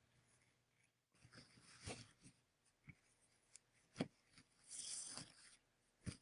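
Faint handling sounds of the paper bracelet units being pushed along a leather cord on a cloth-covered surface: scattered small taps and clicks, the sharpest about four seconds in, then a short scratchy rubbing.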